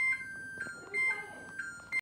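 Electronic two-tone beeping: a short higher note followed by a longer lower note, repeating about once a second.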